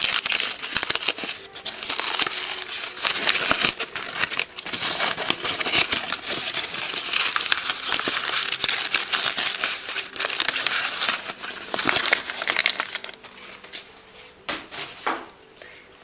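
Crinkling and rustling of wrapping being handled, pulled off and crumpled by hand for about thirteen seconds, then quieter with a few light clicks near the end.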